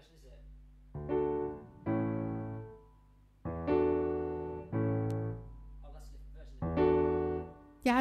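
Digital stage keyboard with a piano sound playing a slow run of five chords. Each chord is struck and left to ring and fade, with short pauses between them, as the player tries out how the song goes.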